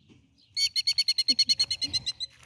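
Killdeer giving a rapid, high-pitched trill of alarm notes, about a dozen a second, starting about half a second in after a brief pause: the agitated calling of a ground-nesting bird with people close to its eggs.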